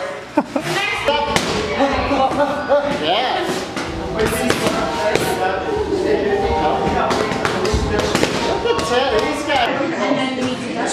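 Indistinct chatter of several voices in a large gym, broken by sharp slaps of boxing gloves landing on focus mitts, at irregular intervals.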